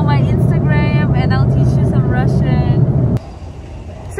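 Steady low drone of a moving vehicle heard from inside its cabin, with voices over it; it cuts off abruptly about three seconds in.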